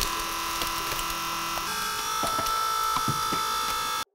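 Holmatro Pentheon battery-powered telescopic rescue ram running under load: a steady motor-and-pump whine whose pitch steps up about 1.7 s in, with a few sharp cracks of car metal giving way as the dashboard is rolled.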